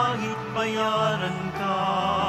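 Church hymn: a singer holding long notes with vibrato over sustained low accompaniment chords.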